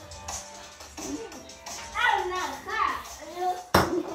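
Children's voices in a sing-song, with music, then one sharp knock near the end.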